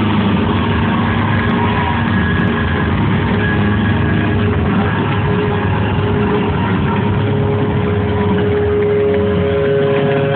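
Loud, steady wash of sound from a live rock gig: held, distorted guitar tones ringing out over the noise of the crowd, without a clear beat.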